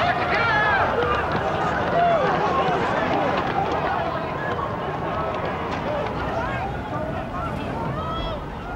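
Many people's voices shouting over one another, high and strained, with a steady low rumble of noise beneath, as a crowd runs from a rolling dust cloud.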